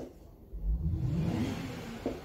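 A motor vehicle's engine rumbling as it passes: a low sound that comes in about half a second in, swells with a slight rise and fall in pitch, and fades near the end.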